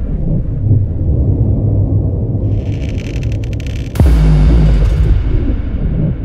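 Deep rumbling drone with a spell of crackling, then a sudden heavy boom about four seconds in that slowly dies away: a cinematic sound-design intro.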